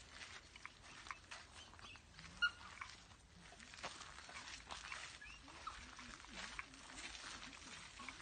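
Pembroke Welsh corgi sniffing in quick, irregular snuffles as it searches for a scent around a tractor's wheel. A short high chirp sounds about two and a half seconds in.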